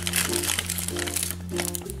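Thin clear plastic bags crinkling as they are handled and unwrapped by hand, in irregular rustles. Background music with held bass notes and a melody plays under it.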